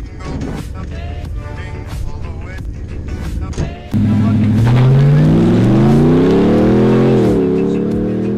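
Music for the first half, then a Ram pickup truck's engine comes in suddenly and loud, heard from inside the cab, accelerating hard: its pitch climbs steadily for about three seconds, drops at an upshift, and then holds steady.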